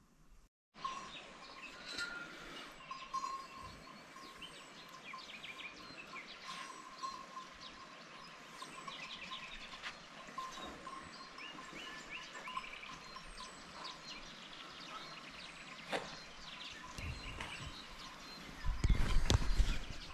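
Birds chirping and calling outdoors in the morning, many short chirps overlapping with a repeated mid-pitched note. Near the end a loud low rumble covers them briefly.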